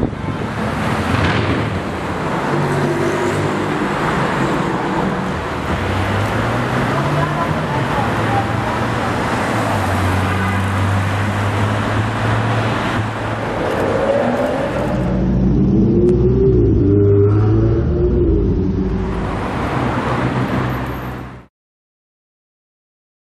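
Luxury cars driving off in city traffic: engines running and pulling away, with road noise. About fifteen seconds in, a deeper, louder engine accelerates, rising in pitch, and the sound cuts off just before the end.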